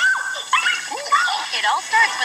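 High-pitched excited voices: short squeals and yelps rising and falling in pitch, several in quick succession.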